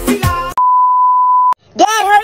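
Music with a sung voice, cut off about half a second in by a single steady high beep tone lasting about a second, the kind of bleep used to censor a sound. After a brief silence, a voice starts near the end.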